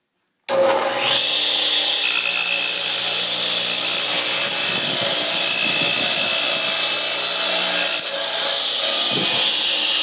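Radial arm saw running and cutting across a thick rough-cut wooden plank, a loud steady high whine with the rasp of the blade in the wood. It starts abruptly about half a second in.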